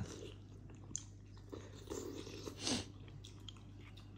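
Faint chewing of a boiled dumpling, with a few small clicks over a steady low hum.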